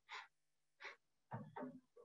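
Near silence with faint breaths from the presenter into her video-call microphone, then a soft, brief murmur of voice about one and a half seconds in.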